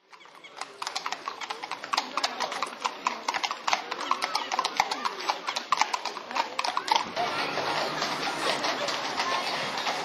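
Horses' hooves clip-clopping on a wet road, many overlapping strikes from several horses walking together, fading in from silence at the start. The hoof strikes thin out after about seven seconds into a steadier background of voices.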